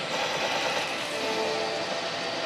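Pachinko-parlor din: the steady, dense clatter and electronic music and effects of many pachislot machines, with a short held tone from the machine just after a second in.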